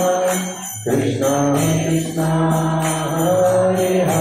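Kirtan: a man singing a devotional mantra into a microphone, with a short pause between phrases about a second in, accompanied by a mridanga drum and jingling hand cymbals keeping a steady rhythm.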